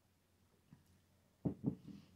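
Near silence while coffee is sipped from a ceramic mug, then two short soft drinking sounds about one and a half seconds in as the sip ends and the mug comes down.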